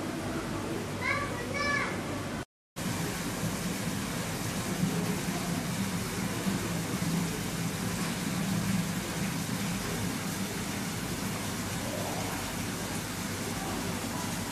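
Steady hiss and low hum of an aquarium hall with faint visitors' voices. A short high-pitched child-like voice sounds about a second in, just before a brief dropout.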